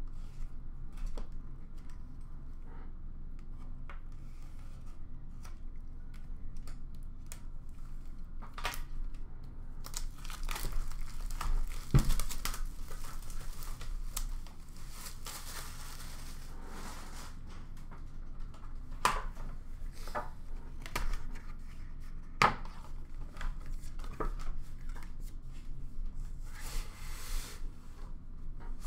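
Plastic wrapping being torn and crinkled off a cardboard hobby box of hockey cards, with rubbing and a few sharp knocks as the box is handled and set down. Near the end, rustling as the cardboard outer sleeve is slid off a wooden inner box.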